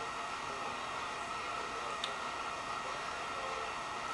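Steady background hiss with no other activity, and one faint click about two seconds in.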